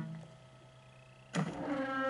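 Electronic sound effects from a Hokuto no Ken pachislot machine. A pitched tone dies away at the start and is followed by a quieter stretch. About one and a half seconds in, a sudden loud electronic sound breaks in and carries on as a held chord.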